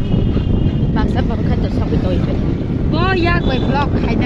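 Steady low rumble of wind buffeting the microphone on a moving open-sided rickshaw, with women's voices talking briefly over it about a second in and again near the end.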